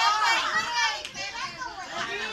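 A group of women shouting and laughing excitedly at once, many high voices overlapping, loudest at the start.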